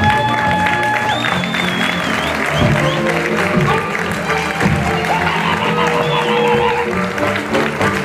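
Moravian cimbalom band (cimbalom, clarinet, violin and double bass) playing a lively verbuňk dance tune, the clarinet carrying the melody over the cimbalom and bass.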